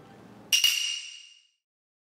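A single bright metallic ping, a chime sound effect marking a chapter title card, struck about half a second in and ringing out for under a second.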